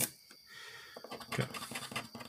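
A scratch-off lottery ticket being scraped with a round scratching tool: a sharp tap at the start, then brief, light scratching strokes.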